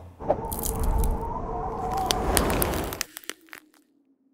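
Crackling, cracking sound effect like ice freezing and splitting, a noisy rush full of sharp clicks that cuts off about three seconds in, followed by a few scattered clicks and a faint fading hum.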